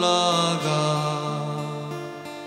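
Live pop-rock song: a male singer draws out a long sung note over strummed acoustic guitar. The note bends for the first half second, then holds steady and slowly fades.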